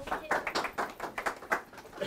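A small audience clapping briefly, a scatter of separate hand claps that thins out near the end.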